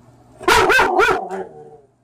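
A dog barking and vocalizing in a quick run of about four short, pitched calls, starting about half a second in.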